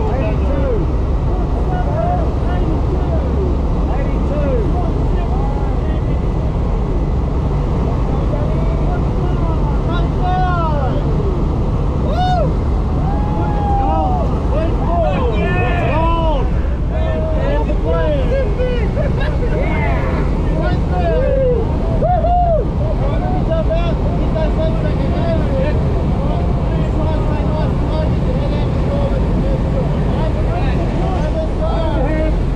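Steady, loud drone of a light aircraft's engine and propeller heard from inside the cabin, with indistinct voices over it at times.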